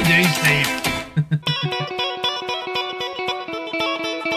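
A three-string Loog guitar being played fast. A dense, loud run of notes comes first, then from about a second and a half in a quick, evenly repeated picked pattern of high notes over held pitches.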